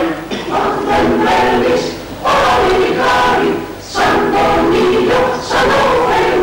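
Mixed choir of men's and women's voices singing together, in phrases broken by short breaths every second or two.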